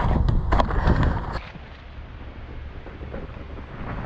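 Wind buffeting the microphone and tyre rumble with sharp rattles from a mountain bike rolling over a mulched dirt trail. About a second and a half in it drops suddenly to a quieter steady hiss.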